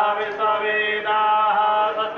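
A voice chanting Sanskrit mantras in a steady, sing-song recitation, holding each note briefly before moving to the next, without a break.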